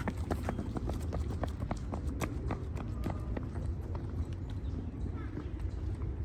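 Running footsteps, a quick, even string of about four steps a second, over a steady low rumble.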